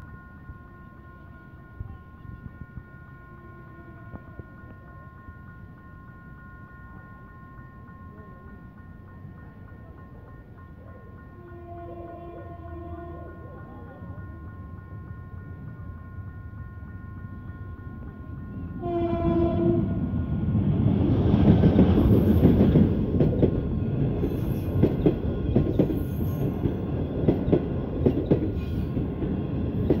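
A diesel-hauled passenger train, an A901 locomotive with Nanjing Puzhen coaches, arrives at a level crossing. A steady warning tone from the crossing runs underneath. The locomotive's horn sounds twice, for about two seconds around twelve seconds in and again louder just before nineteen seconds in, and then the train passes close by, its wheels clattering over the rail joints.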